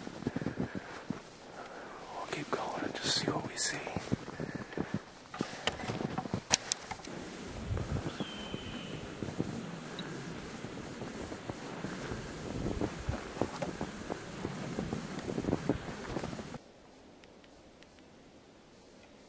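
Faint whispering over irregular rustling and clicking handling noise from a hand-held camera, with a brief high whistle-like note about eight seconds in. The sound drops to a faint hiss shortly before the end.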